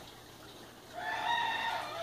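A single drawn-out animal call, rising slightly and then held, starting about a second in and lasting about a second and a half.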